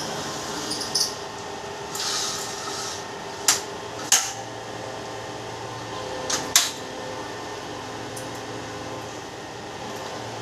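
Sharp knocks and clatters from a sliding glass window and its metal frame being handled, with a few short hissing swishes early on. A steady machine hum runs underneath.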